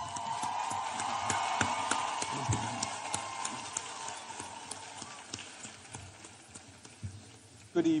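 Scattered audience applause that thins out to a few single claps and dies away.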